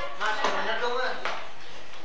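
Indistinct voices of students talking among themselves, heard mostly in the first second or so and then fading to a steady background murmur.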